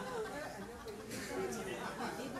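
Indistinct chatter: several people talking at once in a room, no one voice clear.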